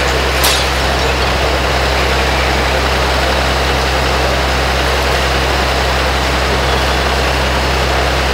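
Diesel engines of parked fire trucks running steadily, a deep hum under a constant loud rush, with one short sharp sound about half a second in.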